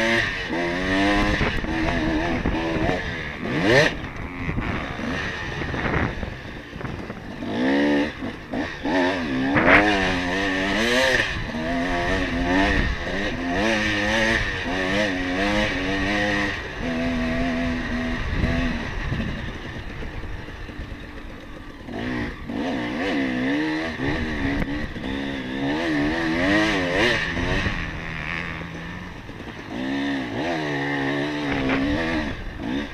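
Dirt bike engine revving hard and falling back over and over as it is ridden around a motocross track, pitch climbing on each run and dropping off into the turns.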